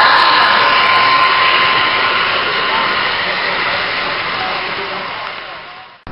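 Model freight train running past on a layout track: a steady rushing whir of wheels and motor, with faint voices in the room, fading away near the end.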